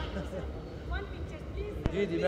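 Faint, indistinct voices of people talking over a steady low rumble, with one sharp click near the end.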